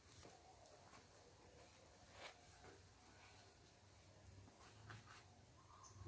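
Near silence: faint background hiss with a few weak, brief clicks.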